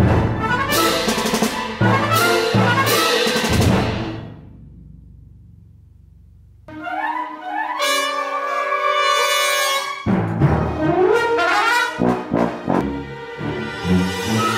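Orchestral music. It opens with heavy percussion hits and ringing cymbals that die away after about four seconds; a brass-led passage with trumpet comes in about seven seconds in, with more percussion hits a few seconds later.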